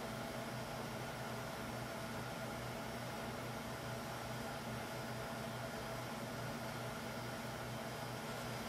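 Steady hiss with a faint low hum: background noise of the recording, with no distinct sounds standing out.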